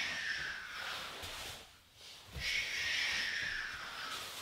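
A man breathing hard in time with a floor exercise: two long, hissing breaths of about two seconds each, with a short pause between them.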